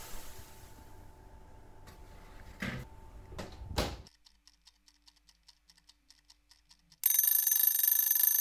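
Boiling water poured into a hot oven tray with a faint hiss, a few knocks, and an oven door shutting about four seconds in. Then a clock ticks softly, about three ticks a second, and a loud ringing alarm-clock bell starts about seven seconds in, a timer sound effect.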